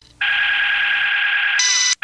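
A steady electronic buzzer-like tone starts abruptly, holds one pitch, picks up a higher layer near the end and then cuts off suddenly: a sound-collage element in lo-fi experimental music.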